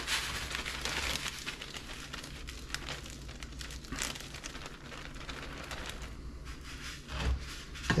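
Plastic zipper bag crinkling as crushed Cap'n Crunch crumbs are shaken out of it onto a plate, a steady fine crackly rustle. A single soft thud comes near the end.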